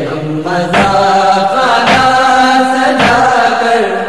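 A male voice chanting a nohay lament in long held notes, unaccompanied by instruments. Under it, a percussive stroke lands about once a second, in the slow beat of matam chest-beating.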